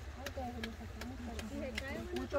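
Background voices of several people talking, not close to the microphone, with a few sharp clicks scattered through and a low steady rumble underneath.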